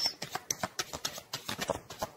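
A deck of tarot cards being shuffled by hand: a string of quick, irregular soft clicks and taps.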